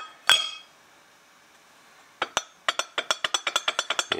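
Cast engine sub base rocked by hand on a surface plate. A sharp knock comes near the start, then from about halfway a quick run of light clicks, several a second, as the casting tips between its high corners: its bottom is not flat, so it wobbles.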